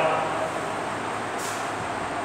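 Steady background noise, an even hiss with no speech, with a brief faint high hiss about one and a half seconds in.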